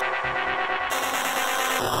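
Electronic music: dense, layered synthesizers pulsing steadily. The low drums drop out, and a bass hit returns near the end.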